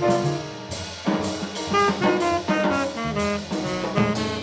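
Live jazz quartet playing: a saxophone carries a moving melody line over piano, double bass and drum kit, with cymbal strokes recurring throughout.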